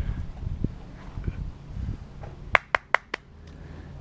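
Dull bumps and scuffs of someone crawling along a thick tree branch right beside the camera, then four sharp clicks in quick succession about two and a half seconds in, the loudest sounds here.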